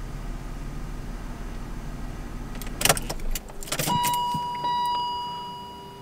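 A car engine idling with a low steady hum, then switched off at the ignition key about three seconds in, with a few sharp clicks from the key. A steady high electronic warning tone then sounds and slowly fades away.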